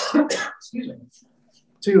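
A man clearing his throat, two rough bursts in quick succession, followed by a brief low hum before he speaks again.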